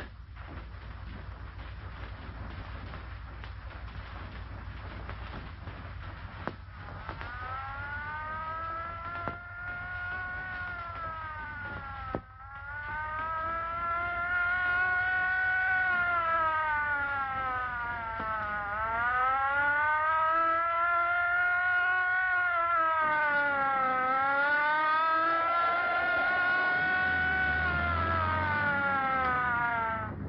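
A police car's siren wails. It starts about seven seconds in, rising and falling in long, slow sweeps of about six seconds each, and grows louder from about twelve seconds in. Before it, there is only a steady low hum.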